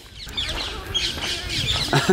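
Small birds chirping briefly over a steady outdoor background noise.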